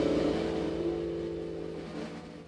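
A jazz ensemble's last held chord dying away: a few sustained low and middle tones ring on and fade steadily, getting quieter through the whole stretch.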